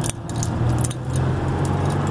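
Car running along the road, heard from inside the cabin: a steady low engine and road drone, with frequent small clicks and rattles over it.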